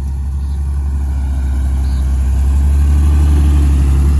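Engine of a lifted Jeep Cherokee XJ running under load as it crawls up a rock slope, a steady low rumble that builds a little through the middle and eases near the end.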